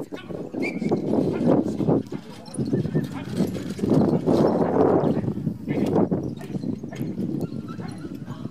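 Hoofbeats of a single pony pulling a four-wheeled marathon carriage through a timber obstacle on turf, together with the carriage's running noise, with voices mixed in.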